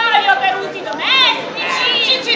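Several performers' voices talking and exclaiming over one another in high, exaggerated tones, with one voice swooping up and down about a second in.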